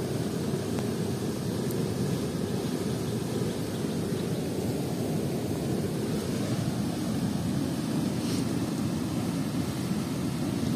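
A steady low rumbling noise at an even level, with a faint short tick about eight seconds in.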